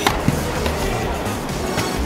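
Tennis ball struck by racket strings during groundstroke practice: a sharp pop right at the start, a softer knock a moment later, and another sharp pop near the end, over steady background noise.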